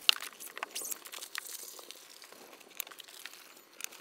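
Mesh bug screen with a magnetic entrance rustling as someone steps through it, with scattered light clicks and taps, most of them in the first second.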